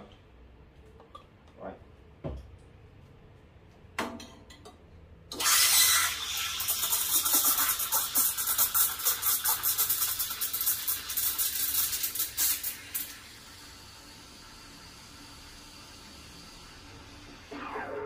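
Steam wand of a Quick Mill Rubino heat-exchanger espresso machine steaming milk in a 300 ml jug. There is a short hiss about four seconds in. From about five seconds comes a loud hiss with rapid ticking as the wand draws air into the milk to stretch it, and at about thirteen seconds it turns to a much quieter steady hiss as the milk is heated.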